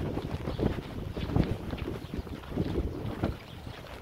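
Wind rumbling on the microphone, with irregular footsteps on a sandy trail.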